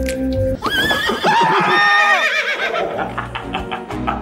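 A horse whinny, about two seconds long, wavering in pitch and dropping away at the end, over background music.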